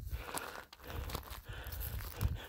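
Footsteps on loose gravel and small stones, a few uneven crunches over a low scuffing noise.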